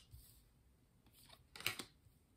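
A quiet room, then a brief papery rustle and snap about one and a half seconds in as a tarot card is slid off the top of the deck.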